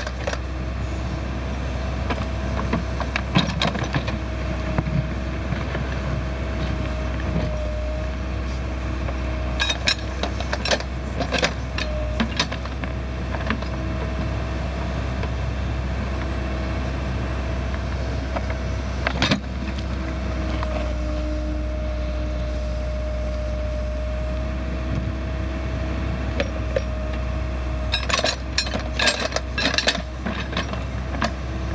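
Case 580L Turbo backhoe digging: the diesel engine runs steadily under load beneath a steady whine that wavers slightly as the boom and bucket move. Sharp clanks and scrapes of the steel bucket in the clay and spoil come now and then, with a cluster of them near the end.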